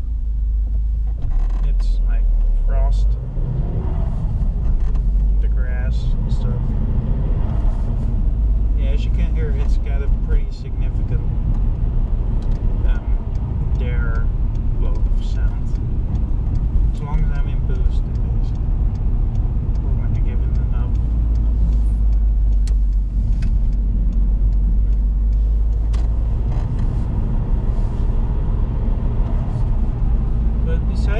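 A 2004 Seat Ibiza 1.8 20-valve turbo four-cylinder being driven, heard from inside the cabin: a steady low engine and road rumble.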